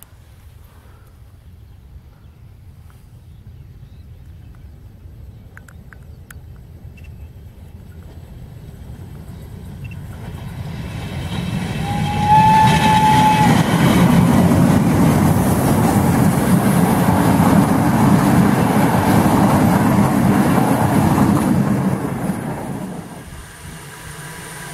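Steam locomotive hauling passenger coaches, approaching and passing close by. It grows steadily louder, gives one short whistle blast about twelve seconds in, then passes with about ten seconds of loud rumble and clatter from the engine and coaches before dropping away near the end.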